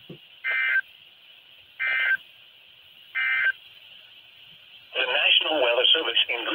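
Emergency Alert System end-of-message signal: three short two-tone digital data bursts, each about a third of a second, sent about a second and a half apart over weather-radio hiss. It marks the end of the alert. A voice starts near the end.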